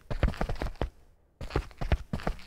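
Synthesised running footsteps in rubber-soled shoes on concrete, from a footstep preset in the Krotos Weaponizer plugin. Quick, even steps break off for about half a second near the middle, then run on.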